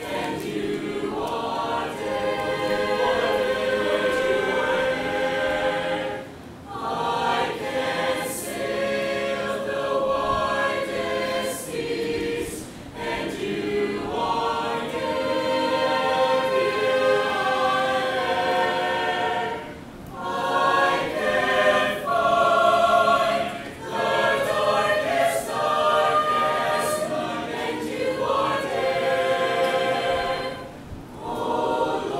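Mixed choir of men's and women's voices singing a piece in parts, in long phrases with short breath breaks about six and twenty seconds in.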